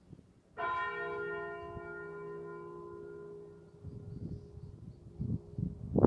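A single stroke of a church tower bell about half a second in, its many overtones dying away over about three seconds. Bursts of low rumbling noise follow.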